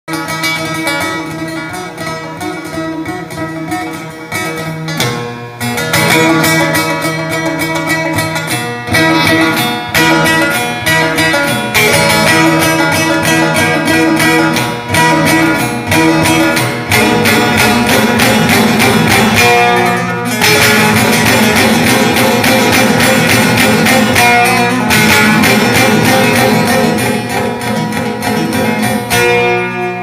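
Solo long-necked bağlama (saz) played with fast, dense picked strokes in an instrumental tune, quieter at first and fuller and louder from about six seconds in.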